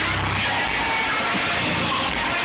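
A gospel choir and live band playing, with guitar and keyboards, in a large hall. It is recorded on a phone's microphone from the audience, so it sounds dull and cut off in the highs.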